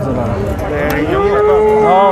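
A bull mooing: one long, steady call that starts about a second in and holds to the end.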